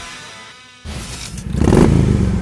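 Background music fades out, then about a second in a motorcycle engine revs up, growing louder with a rising pitch.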